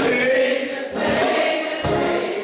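Gospel singing: several voices singing together as a choir, with short breaks between phrases about a second in and near the end.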